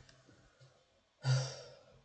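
A man sighing once, about a second in: a sudden breathy exhale with a little voice in it that trails off over about half a second.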